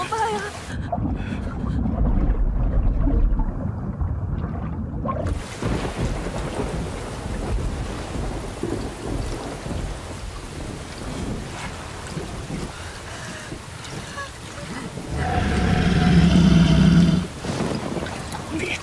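Film soundtrack of a storm: heavy rain with deep thunder-like rumbling. For the first few seconds the rumble is muffled, as if heard underwater. Near the end a loud, low droning tone swells for about two seconds and cuts off.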